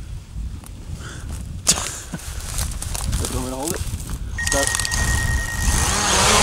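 Wind buffeting the microphone as a low rumble, with a sharp click about two seconds in and a brief voice in the middle. Near the end a steady high whine starts and hiss builds under it.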